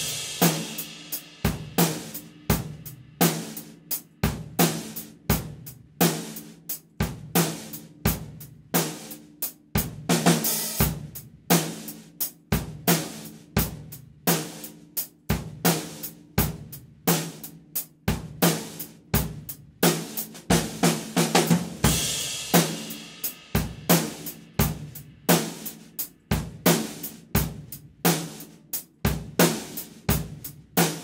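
Drum kit played with sticks in a steady groove, featuring a low-tuned Canopus Type-R 'Bullet' ten-ply maple snare drum with die-cast hoops, along with bass drum, hi-hat and cymbals. Cymbal crashes ring out about ten seconds in and again a little past twenty seconds.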